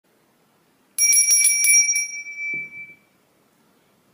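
A small bell rung in a quick run of about six strikes, its ringing dying away over the next second. A short low hum comes in as the ringing fades.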